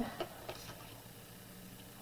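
A few faint, light clicks of card stock being handled on a craft cutting mat, in the first half second, over quiet room tone.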